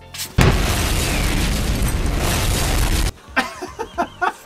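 A loud explosion sound effect from an edited-in comedy cutaway clip. It starts suddenly about half a second in, holds as a dense, deep noise, and cuts off abruptly after about three seconds.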